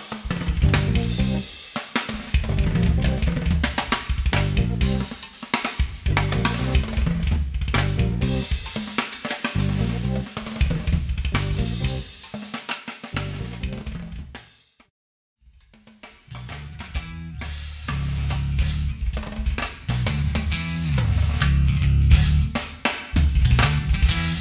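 Live drum kit with snare, bass drum and cymbals playing against a bass line and keyboards. The music cuts to silence about fourteen and a half seconds in, and a new song starts a second and a half later.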